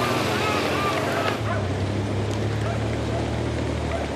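Outdoor field sound of a road race on the broadcast feed: a steady rushing noise with a low engine hum that grows stronger about a second and a half in, and faint distant voices.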